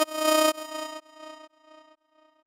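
Electronic music ending: a synthesizer note pulsing about twice a second, then dying away in fading echo-like repeats to near silence.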